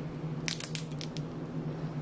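Plastic candy-bar wrapper crinkling as it is handled: a few short, sharp crackles about half a second to a second in.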